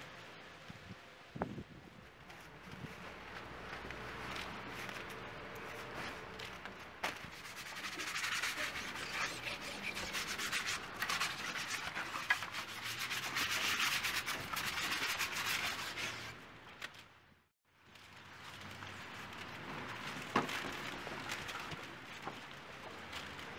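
Hands rubbing and smearing wet mud and white paint across large boards: a continuous scratchy rubbing, loudest in the middle. It cuts out briefly about seventeen seconds in, then resumes.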